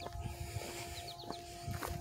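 Faint outdoor ambience: a small bird chirping in short falling notes, two or three at a time about once a second, over a steady faint hum and a low wind rumble.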